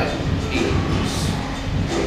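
A steady low rumble with a hum, and a few faint bits of a man's voice.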